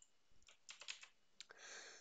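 Faint clicks of a computer mouse, a few quick ones scattered through the middle, as folders are double-clicked open; otherwise near silence.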